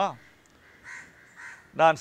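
A man's speech breaks off just after the start and picks up again near the end. In the pause, two short, faint bird calls sound about half a second apart.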